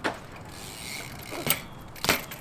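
BMX bike on concrete: the rear hub ticks while coasting, then the tyres land with a sharp impact about one and a half seconds in. A sharp knock also sounds right at the start.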